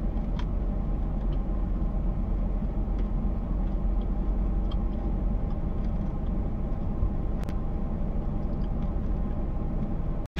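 Steady low rumble inside a parked car's cabin, with a few faint clicks.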